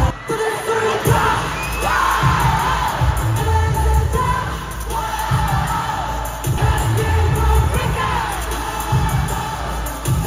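Live K-pop concert sound picked up from the arena crowd: a pop track over the PA with a heavy, pounding bass beat and sung vocals, with the audience cheering.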